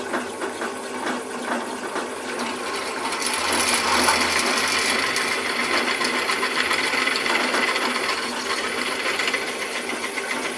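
Drill press running with an 8.5 mm twist drill boring into metal. About three seconds in, the cut gets louder and harsher, a steady metallic grinding as the bit bites in and throws off swarf.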